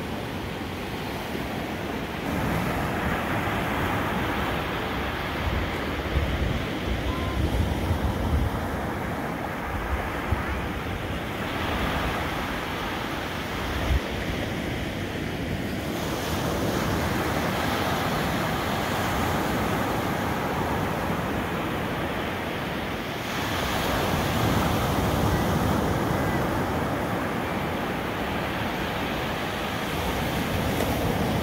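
Ocean surf: waves breaking and washing up a sandy beach, with gusts of wind rumbling on the microphone.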